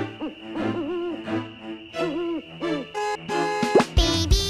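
Spooky children's intro music: a held high note under repeated swooping, hoot-like glides, ending with a quick upward sweep near the end.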